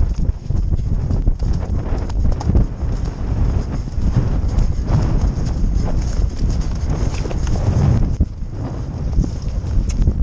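Horses galloping over grass, heard from the saddle: the ridden horse's hoofbeats, with other horses galloping close alongside.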